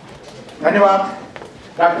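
A man's voice at table microphones: a long, level-pitched syllable starting about half a second in, then ordinary speech beginning near the end.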